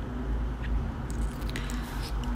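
Soft, wet chewing of a gelatin-textured Popin' Cookin candy sushi piece, with a few faint mouth clicks.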